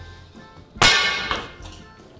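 Break-barrel air rifle: one sharp metallic clack about a second in, ringing briefly as it fades.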